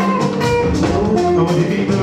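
Live band music with a steady drum beat under guitar and a lead singer on a microphone.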